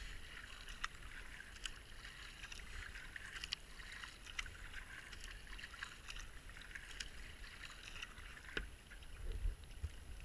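Kayak paddle strokes on a river: a steady wash and trickle of water around the hull, with a short splash about every second as a paddle blade dips in. A low buffet, like wind on the microphone, comes near the end.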